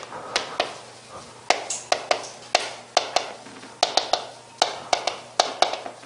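Chalk writing on a chalkboard: a quick, irregular run of sharp taps, about three a second, as characters are written stroke by stroke.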